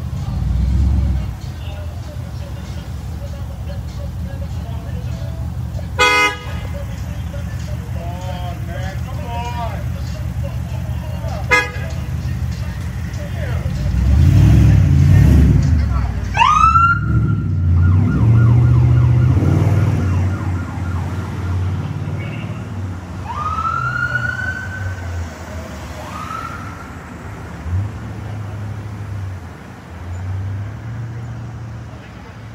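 Idling vehicle engines, with a police siren giving short whoops: a quick rising whoop about halfway through that holds briefly, then two more rising-and-falling whoops later. Two sharp clicks come earlier.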